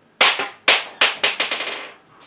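A quick series of sharp taps or slaps, several in two seconds, each starting suddenly and dying away quickly.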